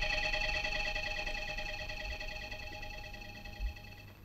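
Film background score: a held, shimmering synthesizer chord that slowly fades away, with a soft low thump near the end.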